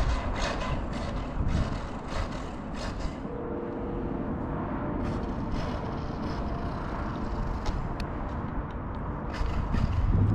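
Kyosho MP9e electric 1/8-scale buggy running on a dirt track under a heavy low rumble, with scattered clicks and knocks and a brief steady whine about three seconds in.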